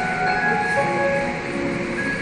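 Ambient electronic soundscape of a light-art installation: several held tones at different pitches overlapping, each entering and dropping out in turn, over steady background noise.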